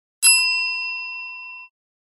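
A single bell-like ding: one sharp strike that rings on at several clear high pitches and fades over about a second and a half before cutting off.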